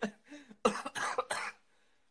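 A person coughing about four times in quick succession.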